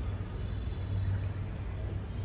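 Steady low hum with an even hiss over it, with no distinct events.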